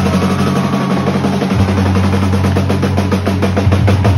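Live emo/math-rock trio playing loud: drums beating out rapid, even hits over held bass and guitar chords.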